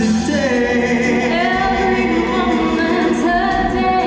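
A male and a female singer singing a duet live through hand-held microphones, with band accompaniment and long held notes.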